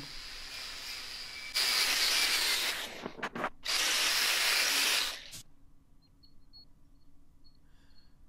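Angle grinder with a red abrasive disc running, then grinding the welded steel of a hydraulic ram's bearing mount in two passes of about a second and a half each, with a short break between them. About five seconds in it is switched off and winds down, leaving only faint ticks.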